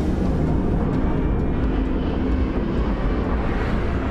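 Steady, loud low rumble of dark, ominous sound design, a droning bed without speech or clear melody that carries the closing music.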